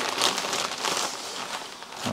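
Crinkling of a plastic poly mailer bag as it is handled and opened and a plastic-wrapped package is drawn out of it: irregular rustling that is loudest in the first half and thins out toward the end.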